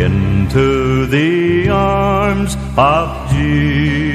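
Southern gospel male vocal trio singing long held notes with vibrato over steady instrumental accompaniment, with a quick upward slide into a note about three seconds in.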